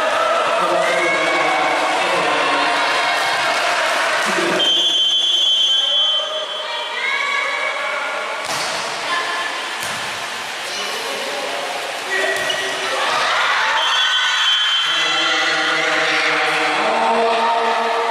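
Shouting and chanting voices of players and supporters in an echoing indoor gym during a volleyball rally. A referee's whistle blows briefly twice, about five seconds in and again near the end, with a couple of sharp ball strikes in between.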